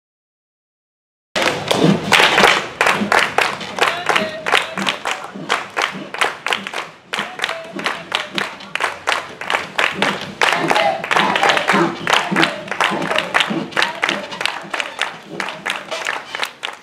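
A group of children and their teacher clapping their hands in a fast, steady rhythm, with voices singing or chanting along. The clapping starts abruptly about a second in.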